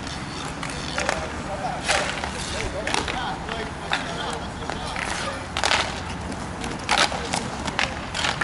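Inline roller hockey play: several sharp clacks of sticks on the puck and of the puck on the boards, over the rolling of skate wheels on the sport-court surface, with short shouts from players.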